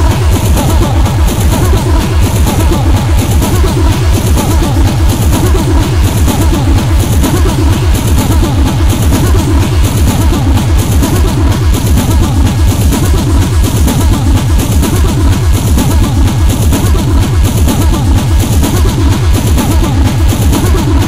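Flashcore/speedcore electronic music from a DJ mix: a loud, dense wall of fast, evenly repeating kick drums with a thick bass layer and noisy sound spread high over the top, running without a break.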